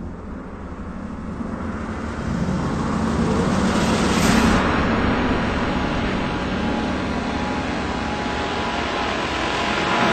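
A small boat's motor running with a loud rushing noise, building over the first few seconds and then holding steady.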